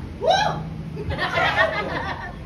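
A woman's short rising squeal, then laughter mixed with several voices about a second later.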